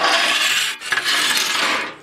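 Sheet-metal hat channel scraping as it is slid and handled, in two long strokes with a short break just under a second in.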